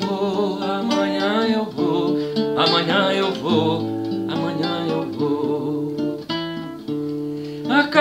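Acoustic guitar played solo, plucking a melody over changing bass notes in an instrumental passage of the song.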